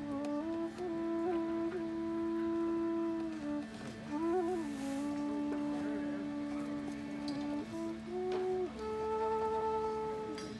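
Bamboo side-blown flute playing a slow melody of long held notes with short ornamented turns, over a steady low drone.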